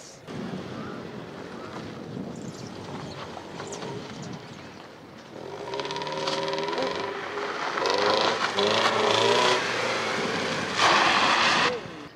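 Mercedes-Benz W124 E200 driven hard in reverse: the engine revs rise and fall under heavy throttle, with a steady whine from the reverse gear. Near the end there is a loud burst of tyre noise on gravel as the car slides and swings round.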